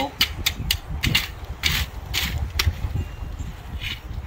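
A rake's tines scraping and dragging through wet concrete in quick, irregular strokes, several a second, as the concrete of a footing is spread and levelled.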